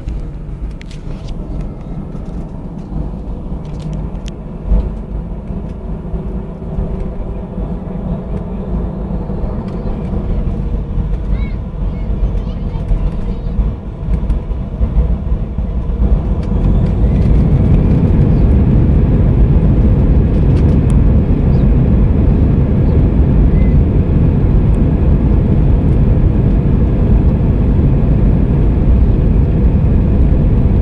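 Airliner jet engines: a steady low rumble that swells about sixteen seconds in and holds at a louder, even level as the engines spool up to takeoff power for the takeoff roll.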